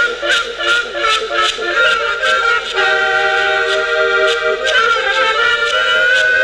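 Live folk music from an accordion and small brass horns, over a beat of short regular strokes. About three seconds in the band holds one long chord for nearly two seconds, then the tune picks up again.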